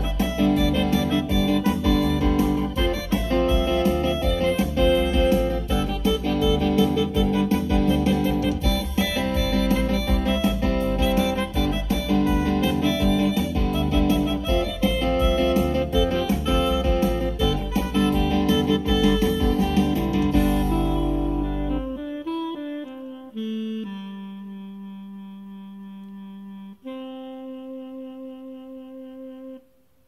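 A rock MIDI song played back on a Yamaha PSR-S975 arranger keyboard's built-in sounds: a full band arrangement with a steady beat. About 22 seconds in the band drops out, and a few slow held notes and a final held chord close the song, stopping just before the end.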